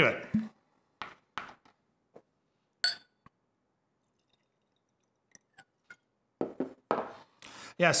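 A glass whisky bottle and a nosing glass being handled. The cork stopper is drawn out with a few soft knocks and clicks, then glass touches glass in a single ringing clink about three seconds in. Near the end come soft knocks as the bottle and glass are set down on the table.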